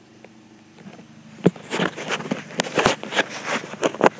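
Footsteps in grass with rustling handling noise from a hand-held phone. It is quiet for about the first second and a half, then comes a run of irregular crunches and clicks.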